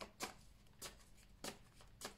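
Quiet shuffling of a deck of oracle cards by hand: about four short, sharp card slaps, unevenly spaced.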